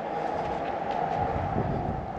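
Wind buffeting the microphone, a steady low rumble.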